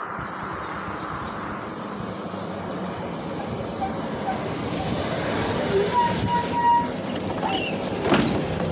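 PAZ-32054 bus with its ZMZ-5234 V8 petrol engine approaching and pulling in to the stop, growing louder as it comes near, with a few brief high squeals near the end as it brakes.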